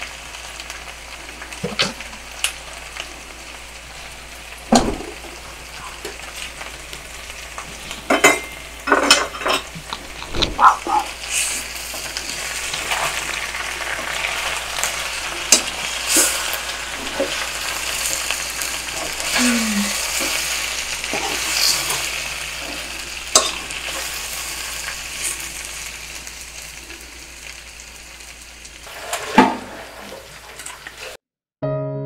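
Marinated chicken pieces sizzling in a hot wok as they are turned with metal tongs. There are scattered sharp clinks and knocks of the tongs against the pan, several in quick succession early in the middle, and the sizzle grows louder in the middle.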